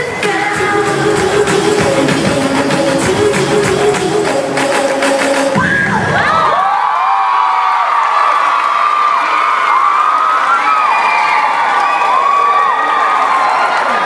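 Pop dance music with a strong beat plays for the first half, then cuts off, and a crowd cheers with children's high-pitched shouts and screams for the rest.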